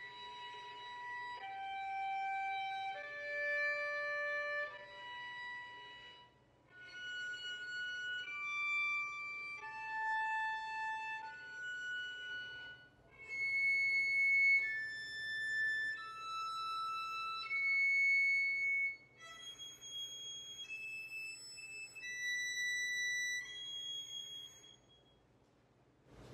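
Violin natural harmonics played one after another: clear, pure, steady notes of about a second each, in four groups of notes separated by short pauses, each group higher than the last as the harmonics of second position are sounded on each string in turn.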